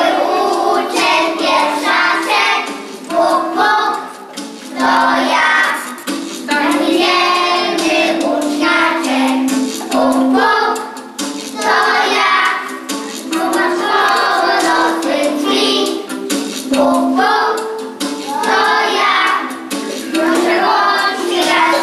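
A group of young children singing a song together in one melodic line, with held notes stepping up and down.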